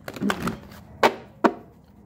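Tarot cards being shuffled and handled by hand, with two sharp slaps of the cards about a second in, half a second apart.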